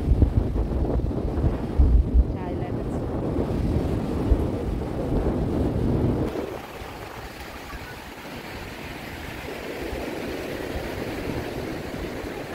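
Wind buffeting the phone's microphone over the sound of surf breaking on a sandy beach. About six seconds in the low rumble stops abruptly, leaving a steady, quieter hiss of waves.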